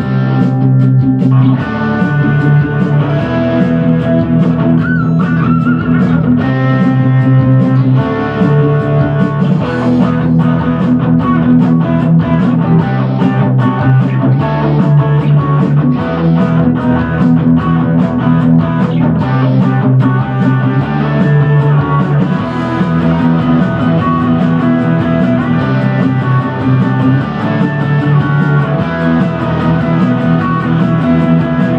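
Electric guitar played through a Blackstar Fly 3 mini amp, playing 80s-style rock lead lines over a rock backing track with a steady drum beat. About five seconds in, one held high note is bent and wavers.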